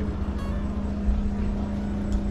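Steady low engine hum of a river boat, unchanging throughout.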